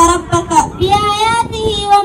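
A girl singing in Arabic into a microphone, a chanted religious poem on the Prophet's lineage, in long held notes that waver and bend.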